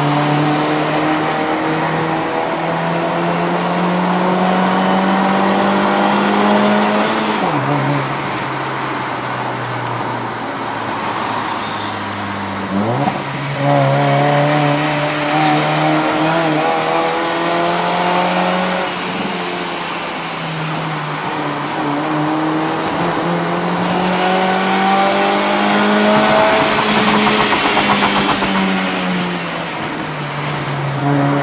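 A 2015 Honda City's 1.5-litre i-VTEC four-cylinder engine, converted from CVT to a five-speed manual, heard from inside the cabin working up a mountain road. The revs climb for several seconds, drop abruptly about seven seconds in, rise sharply again around thirteen seconds, ease off, then climb again through the last third before dropping near the end.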